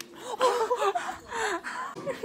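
Girls' high, wavering squeals and gasping laughter, starting about half a second in.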